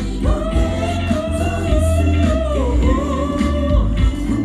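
Male singer holding long sung notes live into a microphone over an amplified pop band backing with a heavy bass: one long note that bends in pitch, then a second shorter one.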